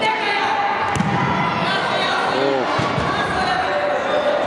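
Futsal ball kicked and bouncing on the wooden floor of a sports hall, with sharp hits about a second in and again near three seconds. Children's and spectators' voices and shouts echo in the hall throughout.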